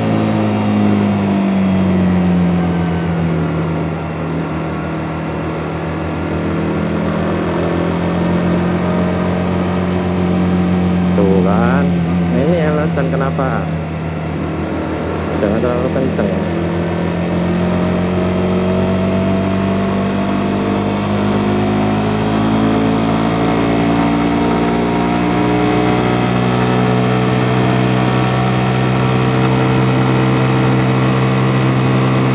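Suzuki GSX-S150 single-cylinder engine heard from the saddle while riding. Its note drops over the first few seconds as the bike slows, holds steady, then climbs steadily through the second half as it accelerates back up to speed. A brief wavering sound comes in around the middle.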